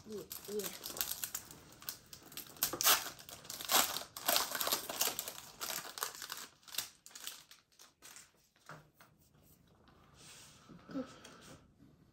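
Foil wrapper of a Pokémon card booster pack crinkling as it is torn open and crumpled by hand, a run of crackles for the first seven seconds or so, then only faint handling.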